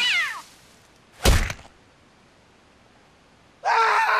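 A wavering cry slides down in pitch and fades out, then a single loud, deep thump comes about a second in. A steady pitched tone starts near the end.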